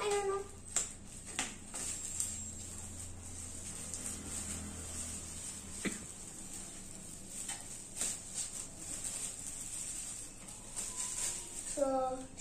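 Scattered light knocks and clicks of laser-cut plywood kit sheets and plastic parts bags being handled on a tiled floor, over a faint low hum.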